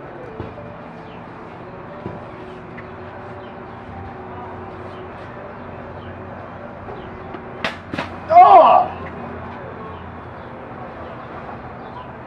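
A spear blade strikes and cuts through a water-filled plastic soda bottle, giving two sharp cracks about eight seconds in. A short, loud yell follows at once. Under it all runs a steady background hum.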